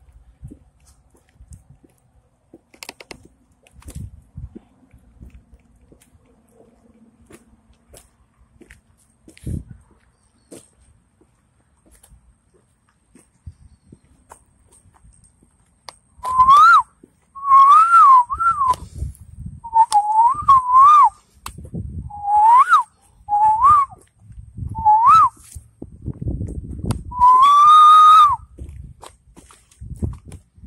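A person whistling loudly: a string of about eight short whistles that each swoop upward, starting a little past halfway, ending in one longer held whistle. Before the whistling there are only faint scattered taps.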